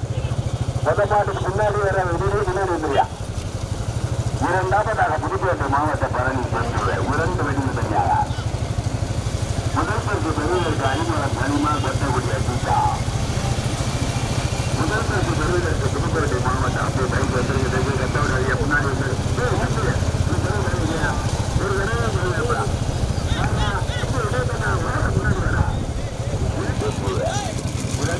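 Motorcycle engine running steadily, with a man's nearly continuous, excited commentary over it that sounds thin, as through a loudspeaker.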